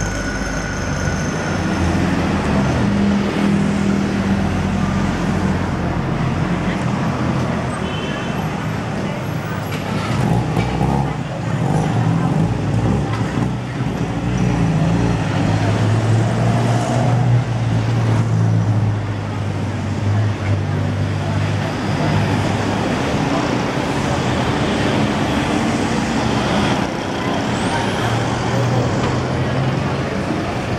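City street traffic: engines of cars, taxis, tuk-tuks and motorbikes running and passing over a steady hum of road noise, with people's voices mixed in.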